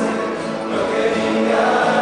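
A rondalla performing live: a chorus of male voices singing held notes over strummed acoustic guitars and a double bass.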